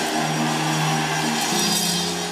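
Soft background music of sustained held notes, the low note stepping up in pitch about one and a half seconds in, over a steady hiss.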